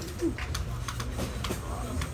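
Steady low room hum with a few small clicks and taps from supplies being handled on a table, and short, low murmured voice sounds.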